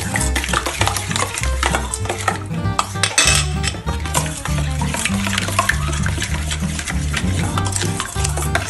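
A metal spoon stirring a liquid marinade in a stainless steel bowl, with frequent light clinks of spoon against bowl, over background music with a stepping bass line.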